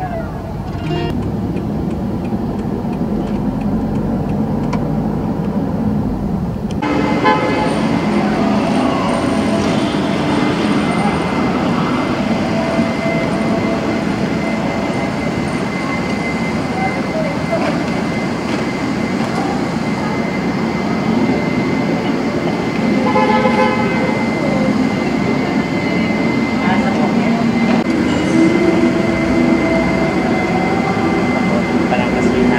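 Street ambience: traffic rumble at first, then after a sudden change about seven seconds in, busier outdoor noise with background voices and a steady high tone. A vehicle horn toots partway through.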